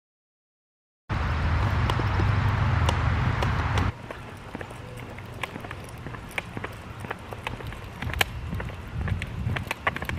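Silence for about a second, then outdoor sound of walking a small dog on a leash over asphalt. A loud steady noise lasts about three seconds and cuts off suddenly. After it come quieter footsteps and light clicks.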